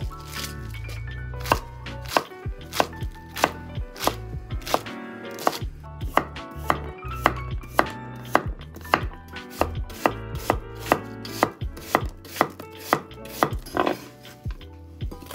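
Kitchen knife slicing romaine lettuce and then an apple on a wooden cutting board: a steady run of sharp knocks as the blade meets the board, about two a second.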